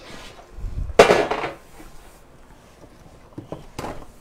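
A metal baking sheet set down on the countertop with one sharp clatter about a second in, briefly ringing; two light knocks follow near the end.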